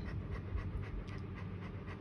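A dog panting close by.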